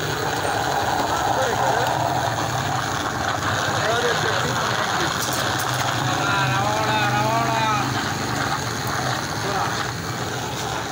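Busy street noise: many voices chattering over a steady low engine hum from traffic. One man's voice stands out from about six to eight seconds in.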